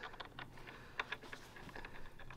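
Small metallic clicks and ticks from a threaded spike and its cover being turned and fitted by hand into the metal base plate of a Sonus faber Serafino G2 floorstanding speaker. The sharpest click comes about halfway.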